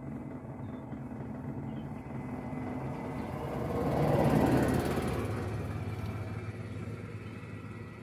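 Car engine idling, heard from inside the cabin as a steady low hum. A broader rush of vehicle noise swells and fades about four seconds in.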